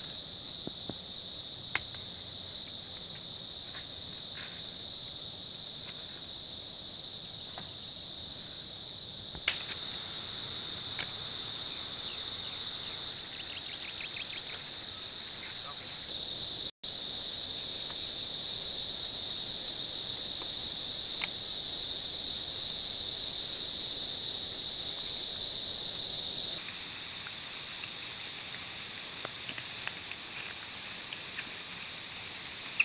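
Steady high-pitched chirring of forest insects, with a few sharp clicks over it. The chorus grows louder about ten seconds in and drops back near the end.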